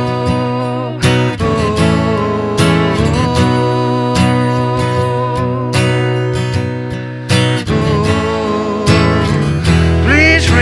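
Steel-string acoustic guitar playing an instrumental passage: chords struck about every second and a half and left ringing in between.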